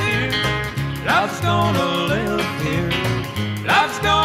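Instrumental passage of an early-1960s country record: guitar over a steady bass line, with a lead line that slides and bends between notes.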